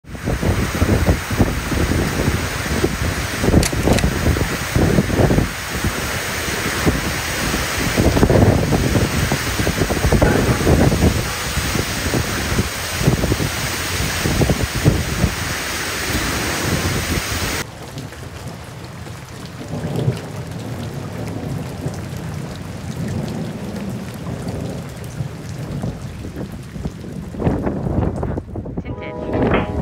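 Heavy rain pouring down over trees and a hillside, with frequent low rumbles in it. About two-thirds of the way through, the rain cuts off abruptly to a much quieter, steady outdoor background.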